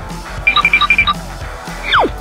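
Background music with an electronic beeping sound effect, a quick run of high alarm-clock-like beeps about half a second in, then near the end a fast falling whistle that slides from high to low.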